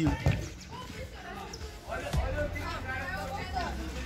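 A futsal ball struck by a bare foot on a concrete court: two sharp knocks close together at the very start, followed by faint voices of players calling out.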